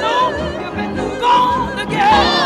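Women's gospel vocal group singing. A lead voice holds high notes with heavy vibrato, one at the start and another past the middle, over lower sustained harmony.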